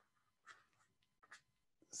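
Near silence: room tone, with two faint, brief noises about half a second and a second and a half in.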